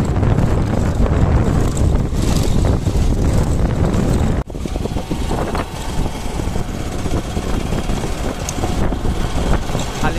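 Wind buffeting the microphone over the rumble of a vehicle moving along a rough dirt road. The sound drops out abruptly for an instant about four and a half seconds in, then carries on a little quieter.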